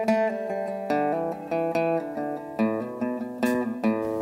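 Recorded rock music: a solo guitar picking a melodic phrase of single notes and chords, each changing about every half second, with no drums or vocals yet.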